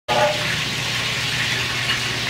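Steady hiss with a low hum underneath.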